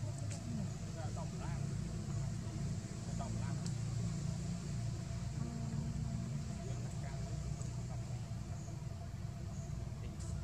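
A steady low engine rumble, like a vehicle running nearby, with a few faint short high chirps now and then.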